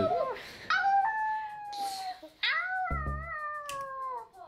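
Two young women howling in play, imitating animals: two long wavering howls, each about a second and a half, their pitch slowly falling, one after the other.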